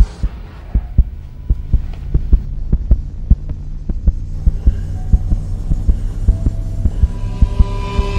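Horror-trailer sound design: a steady pulse of deep thumps, two to three a second, like a heartbeat, over a low droning hum that slowly swells, with higher held tones joining near the end.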